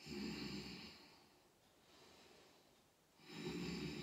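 A woman taking slow, deep audible breaths while holding a yoga stretch: one breath about a second long at the start, and another beginning about three seconds in.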